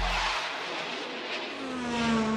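A break in a hip-hop instrumental: the drums and bass drop out, and a hissing, car-like sound effect with faint slowly bending tones fills the gap.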